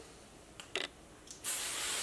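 Hairspray spraying: a brief spurt just under a second in, then a longer hiss of spray from about a second and a half in.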